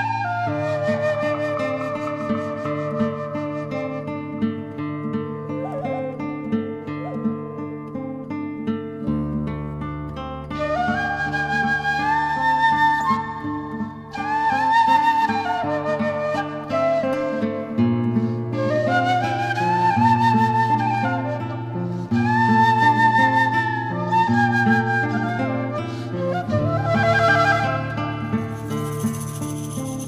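Music: a slow wooden-flute melody in rising phrases that settle onto long held notes, over plucked-string accompaniment and sustained low bass notes. A high rattling sound joins near the end.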